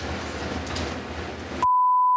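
A TV censor bleep: a single steady high beep of about half a second, about one and a half seconds in, with all other sound cut out beneath it to mask a spoken word. Before it there is only low, steady background noise.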